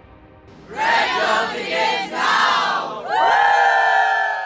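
A choir of young men and women calling out together in unison: two short shouted phrases, then a longer held cheer.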